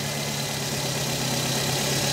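Nissan car engine idling steadily, running with the radiator refilled after a new thermostat has been fitted.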